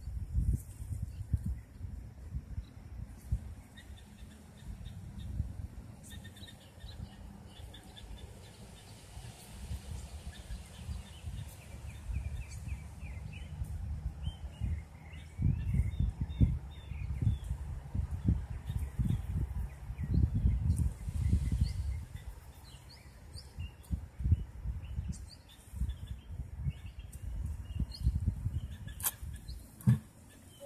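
Wind rumbling on the microphone in gusts, with small birds chirping now and then, and a sharp click near the end.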